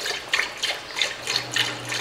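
Milk pouring from a carton into a large aluminium pan, the stream splashing unevenly into the milk already in the pan.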